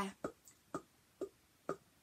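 Plastic cup tapped as a drum: four light taps at about two a second, a steady beat.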